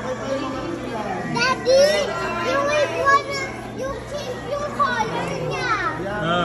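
Young children's high voices chattering and calling out in short bursts, over a steady low hum.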